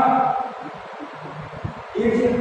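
A man speaking Hindi, his voice trailing off about half a second in, then a pause filled with faint room noise and a few soft low knocks before he speaks again at the end.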